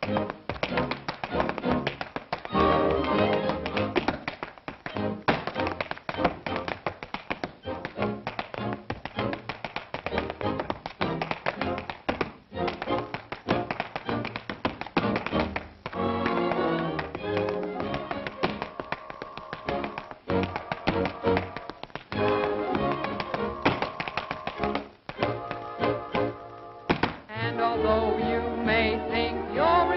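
Rapid tap-dance steps, many quick taps a second, over a lively dance-band accompaniment.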